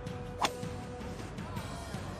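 A golf club strikes the ball once, a sharp crack about half a second in, over background music with a steady held note.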